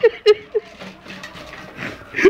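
A man laughing in a quick run of short bursts at the start, then falling quieter.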